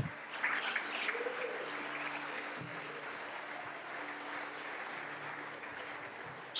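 Faint room sound of a church hall with a low, steady hum that fades out near the end.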